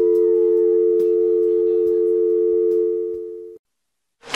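Telephone dial tone, a steady two-note hum, recorded into the track; it fades and cuts off about three and a half seconds in, leaving silence.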